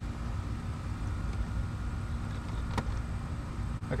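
A plastic interior door-trim piece being pried off by fingernails, releasing its clips with a faint click and then a sharper click about three seconds in, over a steady low rumble.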